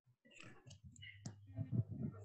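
Faint, irregular clicks and rustling, with one sharp click about a second in, a few low thumps near the end, and a low steady hum after the sharp click.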